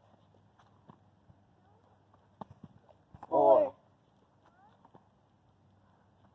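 Two people doing burpees on the ground: scattered light taps and scuffs of hands and shoes landing, with one loud shouted rep count about halfway through.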